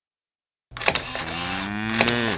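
A camera shutter click, then a cow's long moo that rises slowly in pitch, starting about two-thirds of a second in.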